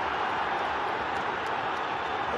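Steady crowd noise from a stadium full of football spectators, an even wash of many voices.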